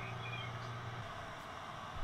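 Steady low hum of a hot-air SMD preheater's fan running with its heater off, cutting out about a second in and leaving a faint hiss. A couple of faint short high chirps sound near the start.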